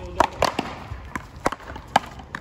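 Paddleball rally: a rubber ball smacked by solid paddles and rebounding off a concrete wall and court, a quick series of sharp smacks about five in two seconds.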